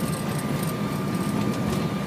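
Boeing 727-200's three Pratt & Whitney JT8D engines running, heard inside the cockpit as a steady low noise with a thin constant whine above it.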